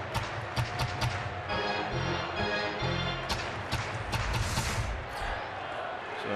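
Ballpark PA music with a fast steady beat over crowd noise that swells about halfway through. The cheering greets a home run scoring on a wild pitch.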